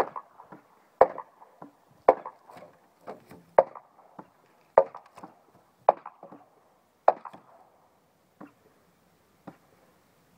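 Weathered wooden fence boards being struck and knocked loose: sharp wooden knocks about once a second, each followed by a short rattle of loose boards. The knocks grow fainter and sparser after about eight seconds.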